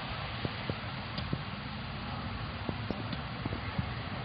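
Steady outdoor background noise with a few scattered soft clicks or taps.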